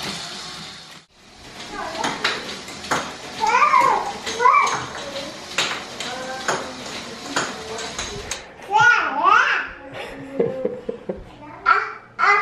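A Lego machine catapult's gear mechanism runs and clicks for about the first second, then cuts off. After that a toddler's high voice calls out several times over scattered sharp clicks and knocks.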